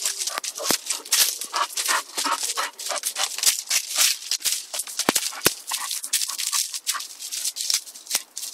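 Gravel and dry leaves crunching and rustling under a bull terrier's paws and nose as it searches the ground, a dense run of quick, irregular crackles and clicks.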